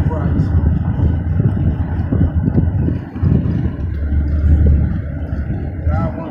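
Road and engine noise heard from inside a moving car's cabin: a steady low rumble.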